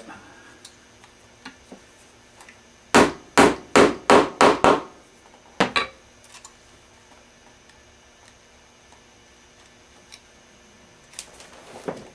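A hammer driving a tack through a leather saddle string into the saddle: six quick strikes in about two seconds, then one more a second later.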